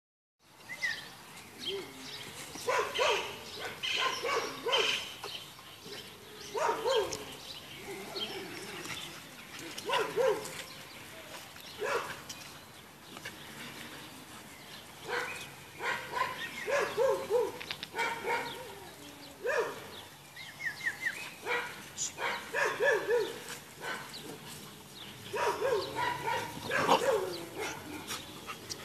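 Dogs barking in repeated short bursts, clusters of barks every second or two with brief pauses between.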